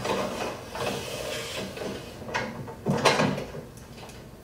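Rustling and knocking of objects being handled, with a sharp knock about three seconds in.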